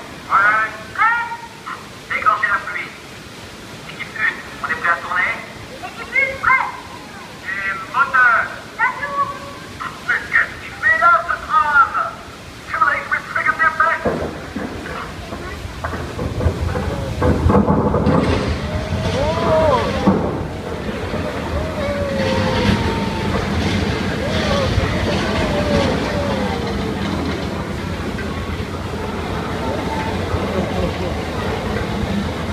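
Special-effects canyon set on the Studio Tram Tour erupting: about halfway through, a loud, continuous rumbling roar builds up and keeps going, the staged disaster of the stunt scene.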